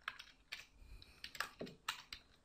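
Computer keyboard being typed on: a handful of faint, separate keystrokes spread unevenly as a line of code is entered.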